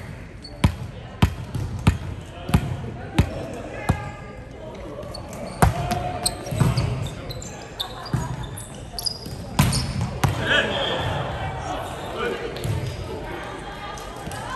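A volleyball bounced six times on a hardwood gym floor, about one and a half bounces a second, then sharp hand-on-ball hits about five and a half and nine and a half seconds in as the ball is put in play and rallied, with players calling out.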